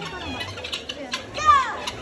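A young child's excited vocal sounds, with one short, loud squeal falling in pitch about one and a half seconds in.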